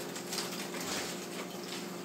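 Nunchaku spinning in figure eights, giving a faint airy swishing through the air.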